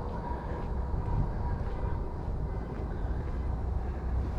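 Steady low rumble of outdoor background noise, with a faint thin steady tone running through it and no distinct events.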